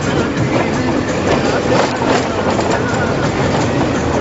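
Car driving on a rough, rubble-strewn road, heard from inside the cabin: loud, steady road and engine noise with frequent small knocks and rattles.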